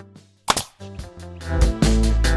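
Background electronic music stops, then a single sharp hit sound effect about half a second in. The music swells back in for the TV channel's logo ident.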